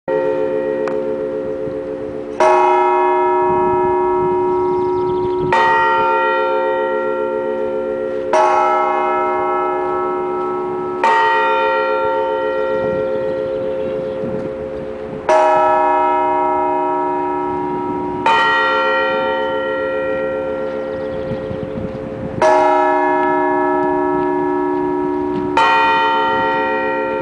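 Russian Orthodox church bells struck slowly, eight strikes about three to four seconds apart. Each strike sounds a chord of several tones that rings on and hums into the next.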